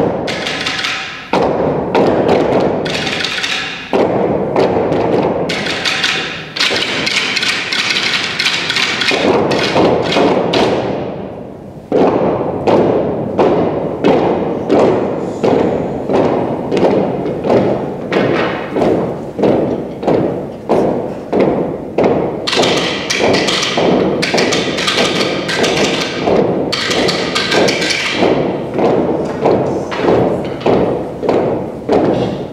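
Ensemble stick percussion: long sticks and poles struck on the stage floor and against each other in a rhythmic pattern, each hit ringing out in the hall. The strikes come sparser and more spread out at first, then settle into a steady beat of about two to three strikes a second.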